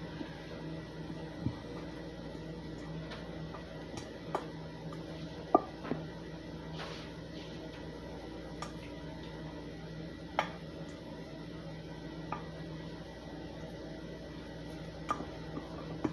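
Hands scooping and scraping ground-beef mixture from a stainless steel mixing bowl: scattered light taps and clicks against the metal, over a steady low background hum.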